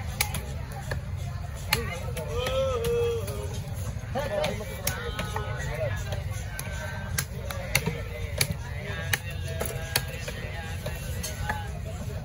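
Heavy knife chopping through a fish into steaks on a wooden block: sharp knocks at irregular intervals, about one a second, over a low steady rumble and voices in the background.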